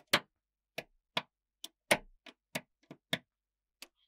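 Small neodymium magnet balls snapping onto a magnet-ball model one by one, each landing with a short, sharp click. The clicks come irregularly, two or three a second, with silence between.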